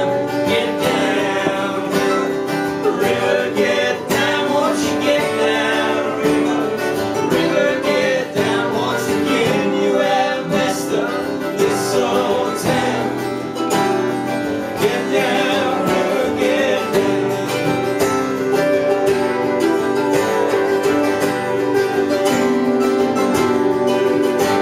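Live acoustic country band playing a song: strummed acoustic guitars with a lap steel guitar and a mandolin, at a steady, even level.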